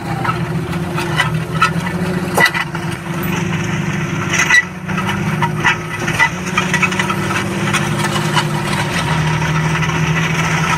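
Tractor's diesel engine pulling steadily under load, heard from inside the cab, with frequent sharp clanks and rattles as the trailed Pöttinger Terradisc disc harrow works the soil.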